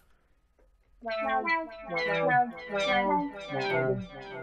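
Sytrus software synthesizer preset being auditioned: a quick run of brassy synth notes, many sliding down in pitch, starting about a second in.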